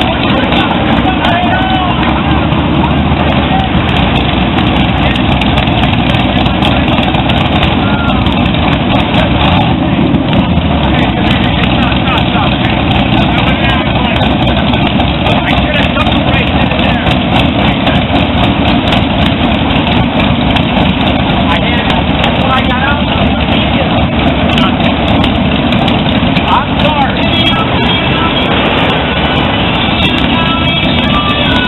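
Loud, steady street noise: motorcycles and other traffic running without a break, with a crowd's voices mixed in.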